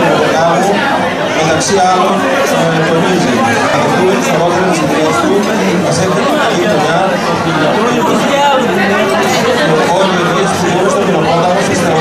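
Many people talking at once in a large hall: a steady crowd chatter with no single voice standing out.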